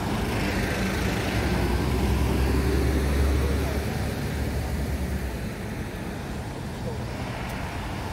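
Street traffic with a bus and other motor vehicles passing close by: a low engine rumble builds to its loudest about three seconds in and fades away by about halfway through.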